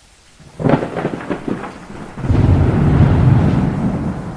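Thunderstorm sound effect: rain hiss, a crackling thunderclap about half a second in, then a long deep thunder rumble from about two seconds in.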